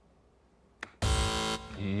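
Near silence, a short click, then a quiz-show buzzer sounds one steady electronic tone of about half a second: a contestant buzzing in to answer.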